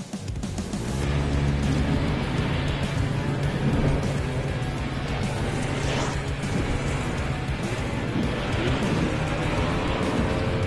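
Snowmobile engine picking up revs about a second in, then running steadily at speed as the machine heads downhill, with background music over it.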